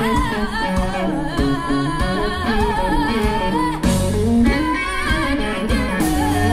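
Live soul-blues band: a woman sings long notes with a wide vibrato over electric guitar and drums, heard from the audience through the concert PA.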